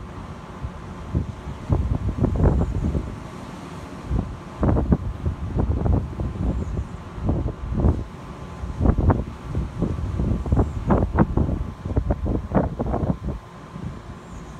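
Wind buffeting the microphone in irregular gusts, a rumbling rush that swells and drops every second or two.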